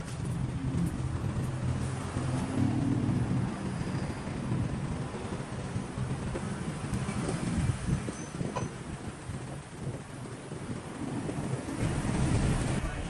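City street traffic noise, with a motor vehicle's engine running nearby as a steady low hum through the first half that fades away after about six seconds.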